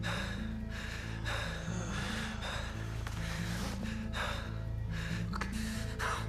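Film score of sustained low notes that step slowly in pitch, with a man's ragged gasping breaths breaking in about once a second.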